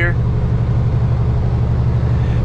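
Steady low drone of a Peterbilt semi truck's diesel engine and road noise, heard inside the cab while driving slowly.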